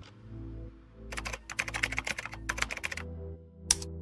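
Computer keyboard typing sound effect: a quick run of keystrokes from about a second in for two seconds, then a single sharp mouse click near the end, over a steady background music bed.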